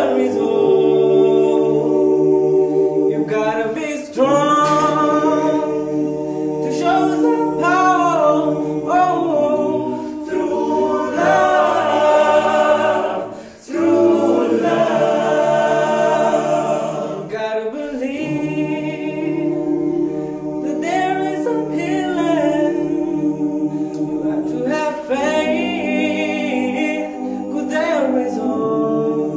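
Male vocal group singing a cappella in harmony: the group holds sustained chords while a lead voice sings a moving melody above them, with a brief break about halfway through.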